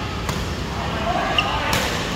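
Badminton rally: a racket strikes the shuttlecock twice, about a second and a half apart, the second hit the louder, with a short shoe squeak on the court just before it. Steady background noise runs underneath.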